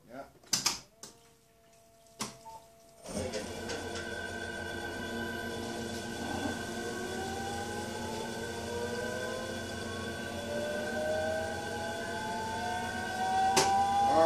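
Electric drive of an EV-converted BMW 840Ci switching on and idling: a few sharp clicks, then from about three seconds in a steady electric whine made of several tones, with a thinner tone rising slowly in pitch over the second half as the motor turns the ZF 5HP24 automatic gearbox in neutral.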